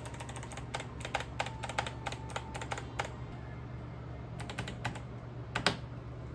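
Computer keyboard keys tapped quickly and repeatedly while the PC boots, the usual way of getting into the BIOS setup. There are two runs of clicks: one of about three seconds, then a pause, then a shorter one.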